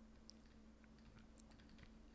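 Near silence: a faint low hum with scattered faint clicks of a stylus writing on a tablet.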